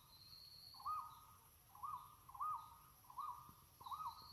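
Faint bird calls in the forest: about five short whistled notes at uneven intervals, each rising and then falling in pitch, over a thin steady high-pitched tone in the background.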